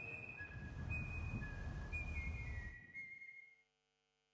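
A whistled tune: a handful of clear high notes stepping down in pitch over a low rumbling background, fading out to silence a little after three seconds in.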